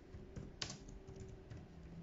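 Laptop keyboard being typed on: a few separate, faint key taps, the loudest just over half a second in.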